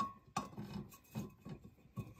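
A light knock as a metal tumbler is set down onto the laser rotary's rollers, followed by a few faint handling taps.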